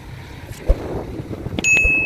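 Low rumble of a loaded sugarcane truck's engine as it drives off, mixed with wind on the microphone and a few dull knocks. Near the end a bell-like ding rings out and holds.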